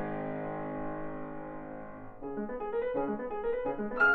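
Piano music played by two pianists. A loud chord struck just before rings on and fades for about two seconds, then a quick run of short, detached notes begins and grows louder.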